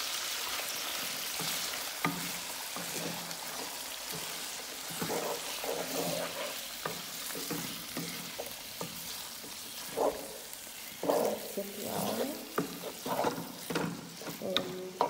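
Diced raw pork sizzling steadily in hot oil in a nonstick pan, stirred with a wooden spatula that scrapes and knocks against the pan, more often near the end.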